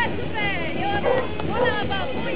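A dog whining in high, gliding cries, twice: about half a second in and again about one and a half seconds in, over the chatter of people.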